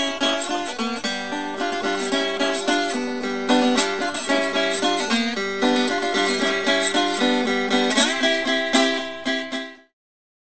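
Three-string cigar box guitar tuned G-D-B (open G), played with a slide as a short blues riff: the two high strings move from the third to the second to the third position over a ringing low string, then the low string is taken at the third. The notes are picked steadily, with one slide up in pitch near the end, and the playing cuts off suddenly just before the end.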